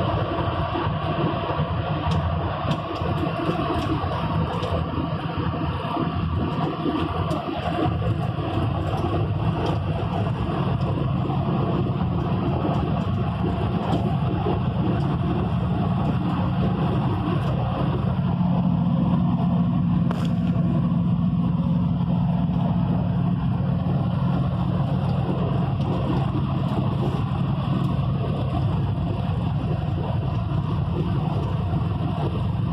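Steady engine and road noise heard from inside a vehicle driving at speed on a highway, with a low engine hum that grows stronger a little past halfway.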